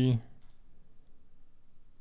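Faint computer mouse clicks over low room noise, after a spoken word ends.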